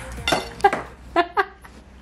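A few short clinks and knocks of kitchenware: a jar and dishes being handled on a countertop, about four sharp sounds in the first second and a half.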